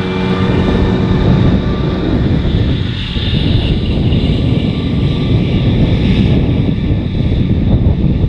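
John Deere tractors running under load while pulling trailed mowers through grass, a steady, dense low engine drone with the mower running. The sound shifts about three seconds in, where the picture changes to a tractor further away.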